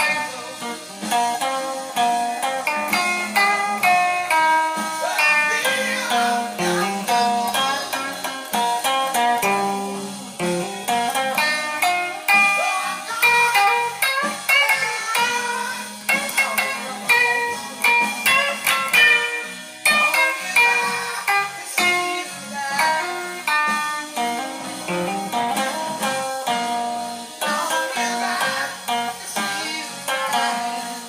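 Electric guitar played solo: quick runs of single picked notes and short lead phrases, with brief pauses between passages.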